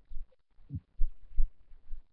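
Irregular low thumps and short rumbles, five in two seconds, picked up close to a webcam microphone.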